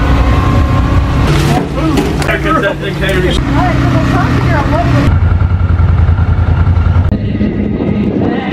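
A motor engine running with a steady hum beneath people talking, the sound changing abruptly about five seconds in and again about seven seconds in.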